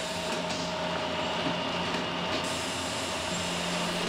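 Tea packaging machinery running steadily: a continuous mechanical hum with a few constant tones in it.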